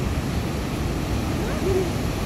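Steady rush of white water in the creek rapids far below. Near the end there is a brief low hoot-like voice sound.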